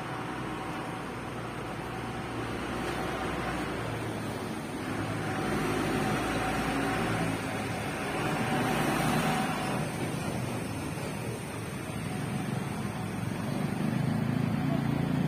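Street traffic: vehicle engines running and passing, with a faint steady whine through the middle, growing louder near the end as the traffic comes closer.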